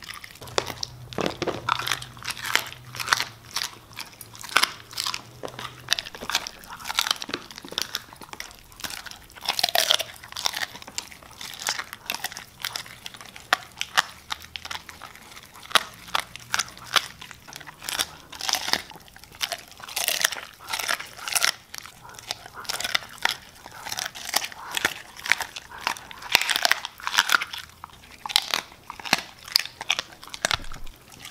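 Siberian husky biting and chewing a whole raw tilapia: a steady, irregular run of wet crunches and bites, several a second, as its teeth work through the fish.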